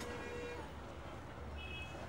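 Street traffic rumble with a short, high-pitched horn toot about one and a half seconds in. A lower steady tone, also like a distant horn, fades out in the first half-second.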